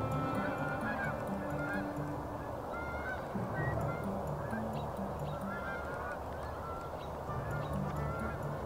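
A flock of geese honking in flight, many short calls overlapping one another without a break.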